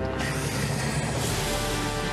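Background music score with held, sustained notes, moving to a new chord a little over halfway through.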